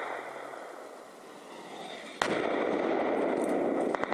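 Machine-gun fire in rapid bursts: one burst ends just after the start and another begins near the end. About two seconds in, a heavy mortar round goes off in a sudden loud blast that rolls on for about a second and a half.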